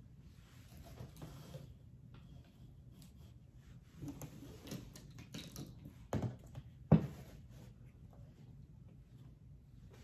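Small salon supplies being handled and set down on a table: light taps and brief rustles, with two sharper knocks about six and seven seconds in, the second the loudest.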